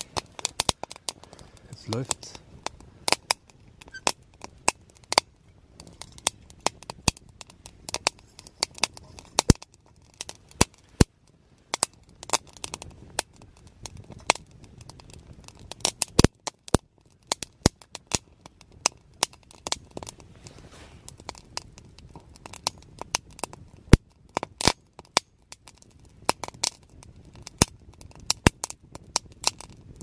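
Small wood fire crackling inside a metal hobo stove: irregular sharp snaps and pops, several a second.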